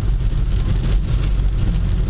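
Steady low rumble of a car cabin on the move on a wet road, with the hiss of rain and tyre spray.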